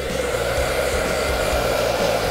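Handheld hair dryer blowing hot air on very low speed with no diffuser attached, a steady airy hiss, drying the hair's roots completely.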